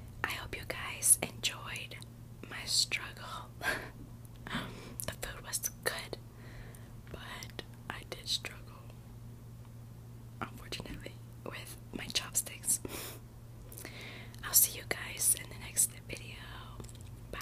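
A woman whispering in short phrases with pauses between them.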